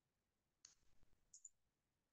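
Near silence with a few faint computer keyboard key clicks, keys being typed one at a time.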